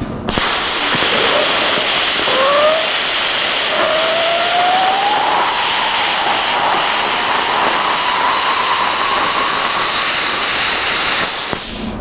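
AHP AlphaCUT 60 plasma cutter, running at 50 amps on 75 psi air, cutting quarter-inch steel plate: a loud, steady hiss of the plasma arc and air that starts just after the beginning and cuts off shortly before the end, with a faint whistle rising in pitch a few seconds in.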